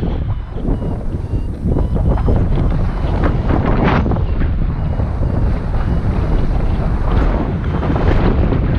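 Wind rushing over the camera microphone in paragliding flight, a loud steady rumble with gusts that swell, most strongly about four seconds in.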